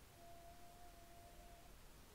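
Near silence: room tone, with a faint steady pure tone that holds for about a second and a half and then stops.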